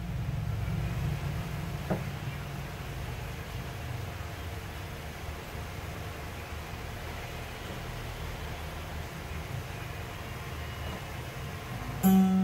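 A steady low rumble with a faint even hiss above it, and one brief click about two seconds in.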